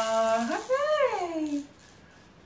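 A woman's singing voice holds a long note while a plastic baby shaker rattles over it. About half a second in, both stop and a voice swoops up and then back down in pitch, then it goes quiet.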